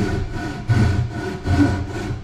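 Japanese ryoba pull saw cutting across the end of a thick laminated wood slab, in a steady run of back-and-forth strokes.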